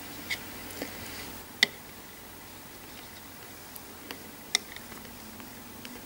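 A few light clicks and taps as a craft knife and a sheet of polymer clay are handled on a hard work surface, the sharpest about one and a half seconds in.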